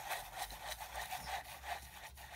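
Metal wide-toothed pick dragged through wet white acrylic paint on a stretched canvas: a faint rubbing scrape in repeated uneven strokes as the base coat is spread.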